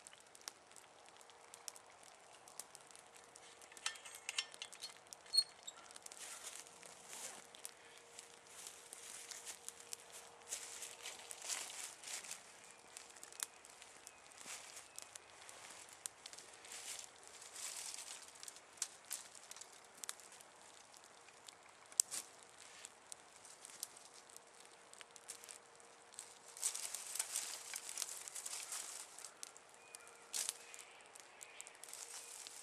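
Small twig campfire crackling and hissing, with irregular snaps and a couple of sharp pops; a louder noisy stretch comes near the end.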